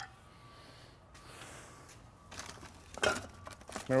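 Faint rustling with a few light knocks near the end, from hands rummaging through a plastic trash-bag liner in search of a dropped brake part.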